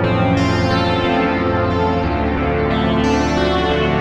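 TAL-U-NO-LX software synthesizer (an emulation of the Roland Juno-60) playing a preset as held polyphonic chords over a bass note. New notes are struck about a third of a second in and twice near the end, and the bass moves to a new note about halfway.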